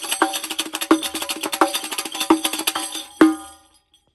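Gawharet El Fan riq (Egyptian tambourine) played in a fast rhythm: deep strokes on the head with rapid jingling of its brass cymbals between them. The rhythm ends on one last strong stroke about three seconds in that rings out and dies away.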